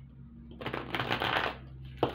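A worn tarot deck being riffle-shuffled by hand: the cards rattle together for about a second, followed by a sharp slap of cards near the end.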